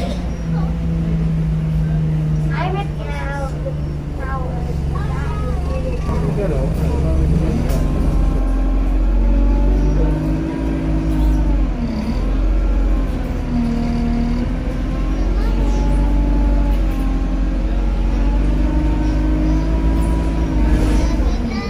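Bus engine and drivetrain heard from inside the cabin, running under load. The pitch dips and climbs again about twelve seconds in as the bus slows and pulls away. Indistinct voices come through in the first several seconds.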